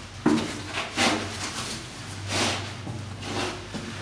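Handling noises on a steel deck plate: a sharp knock about a quarter second in, then rustling and scraping as a gloved hand takes hold of a plastic jug and lifts it, over a low steady hum.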